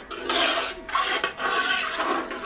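A spoon scraping the bottom of a metal pot in repeated strokes, stirring a bubbling mixture of blended pepper, onion and tomato paste as it fries, to keep it from sticking and burning.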